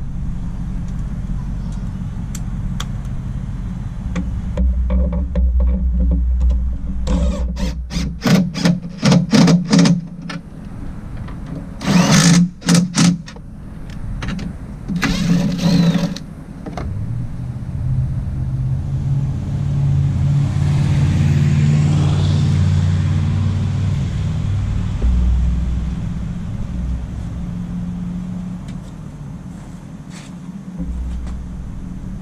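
Cordless drill/driver running in bursts as it drives the mirror's mounting bolts into the truck door: a string of short trigger pulses, then two longer runs. Afterwards a low engine hum swells and fades, like a vehicle going by.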